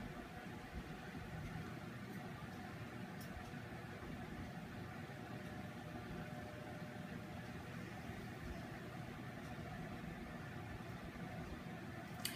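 Steady low background hum with faint hiss, room tone with a few faint ticks.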